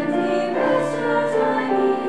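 Choir singing, holding long notes with a few sung consonants cutting through.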